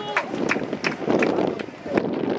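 Outdoor football pitch sound: wind rumbling on the microphone, a few sharp knocks, and players' calls in the distance.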